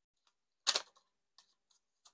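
A deck of tarot cards being shuffled by hand: a few faint card clicks and one louder, short shuffle sound just under a second in.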